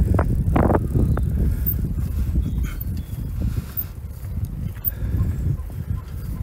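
Wind buffeting the microphone as a low, steady rumble, with a few sharp scuffs in the first second from footsteps on the gravel towpath.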